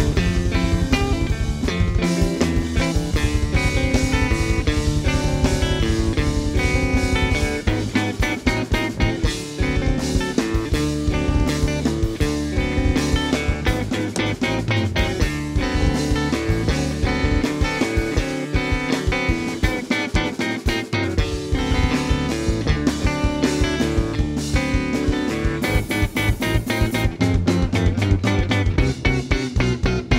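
Instrumental rock trio playing live: electric guitar and electric bass over a busy drum kit, with no vocals.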